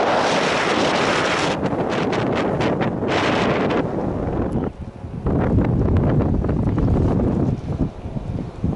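Wind buffeting the camera microphone on an open mountain chairlift, a loud rough rumble that rises and falls in gusts and drops away briefly about five seconds in.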